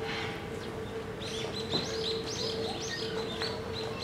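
Small birds chirping, a quick run of short high notes starting about a second in, over a steady low hum.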